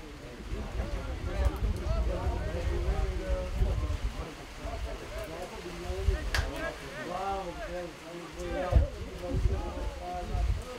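Players' and onlookers' voices calling and shouting across an open football pitch, over wind rumble on the microphone. There is a sharp knock a little past the middle and a low thump near the end.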